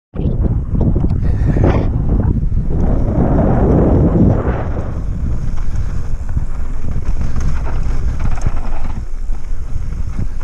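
Wind buffeting the microphone of a camera riding a mountain bike down a dirt trail, over the steady rumble and irregular rattle of tyres and bike on rough ground. A louder gust swells about three to four seconds in.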